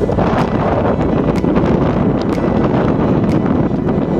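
Wind buffeting the microphone in a steady, loud rumble, with faint light clicks recurring about once a second.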